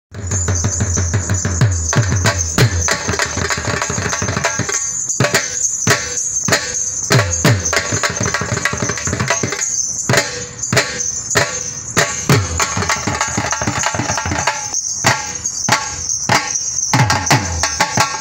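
Two dhol drums played together in a fast Sufi dhol rhythm: quick sharp strikes on the treble heads with deep bass strokes that fall in pitch.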